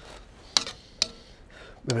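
A metal spoon clinking twice against a stainless steel pan, about half a second apart, as it scoops up chickpea soup.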